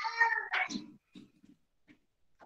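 A short animal call with a clear pitch, lasting about half a second at the start, followed by a few faint short knocks.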